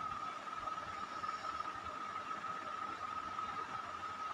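Steady background noise: an even hiss with a faint, constant high whine running through it.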